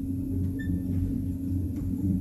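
Steady low hum, with no other sound of note.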